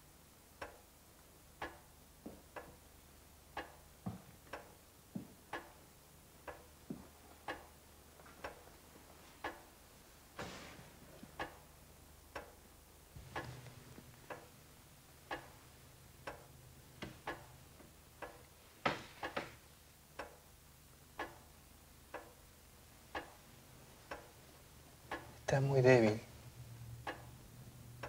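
A clock ticking steadily, about once a second, in a quiet room. A low, steady hum comes in about halfway through.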